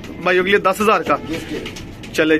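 A man's voice talking, with domestic pigeons cooing around him.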